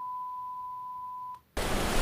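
TV colour-bar test tone: one steady beep lasting about a second and a half, ending in a click. After a brief silence, a steady rush of noise starts near the end.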